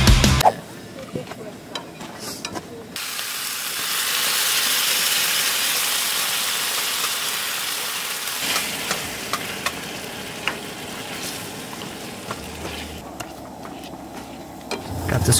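Chicken coconut curry poured into a hot skillet on a camp stove, sizzling. The sizzle starts suddenly about three seconds in and slowly dies down, with a few light clicks of the spoon and pan.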